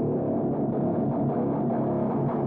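Intro of a trap metal instrumental: a distorted guitar riff sounding muffled, with its treble filtered away and no drums.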